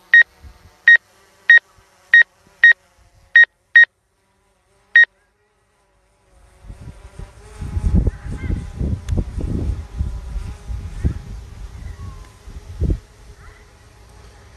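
Eight short electronic beeps from the drone's remote controller and flight app, unevenly spaced over the first five seconds, just after take-off. From about six seconds in, gusty wind rumbles on the microphone, with a faint steady hum behind it.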